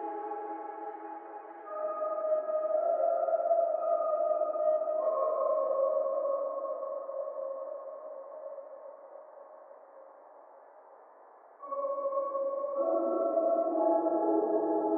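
Dark ambient synthesizer music: sustained, held chords that change every few seconds, slowly fading down through the middle before a new chord enters suddenly near the end.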